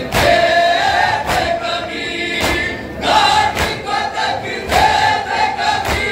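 A crowd of male mourners chanting together in long held lines. Sharp unison chest-beating slaps (matam) land about once a second.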